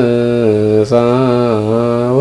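A solo man's voice chanting an Ethiopian Orthodox wereb hymn in Ge'ez, holding long notes with gentle wavering ornaments, with a quick breath about a second in.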